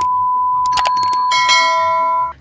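Subscribe-animation sound effects: a steady test-pattern beep tone, a few quick mouse clicks in the middle, then a notification bell chime ringing over the tone from a little past halfway.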